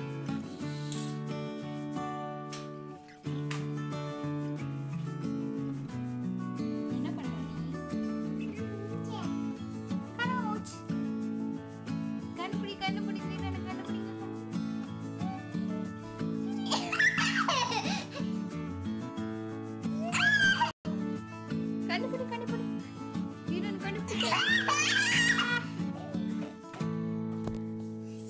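Background music, with a young child's high-pitched laughing and squealing several times in the second half.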